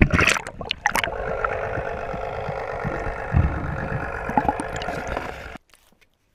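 A largemouth bass splashing as it is released into the water, followed by steady gurgling and lapping of water close to the microphone, which cuts off suddenly near the end.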